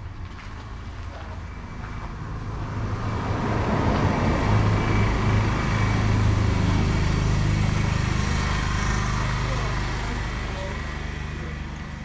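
A motor vehicle passing: engine and road noise swell over a few seconds, hold, then fade away.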